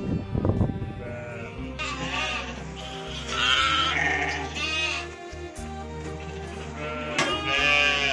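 A young lamb held close bleats four or five times, short calls with a wavering pitch, with a gap of a couple of seconds before the last one. Background music plays throughout, and there is a short laugh at the very start.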